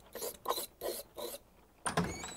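Five soft rasping strokes, about a third of a second apart. Near the end comes a sharp click as a wooden door is unlatched and opened, with a faint thin squeak after it.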